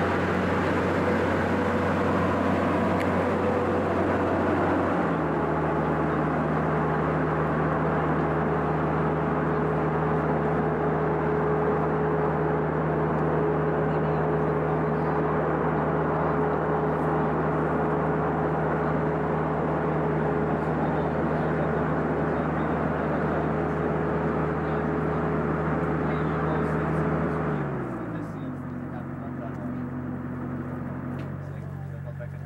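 Agritech 1155 narrow tractor's engine running steadily while working a towed 500-litre sprayer, with a loud rushing noise from the sprayer over the engine hum. The engine speed steps up about five seconds in; near the end it throttles down and the rushing noise drops away.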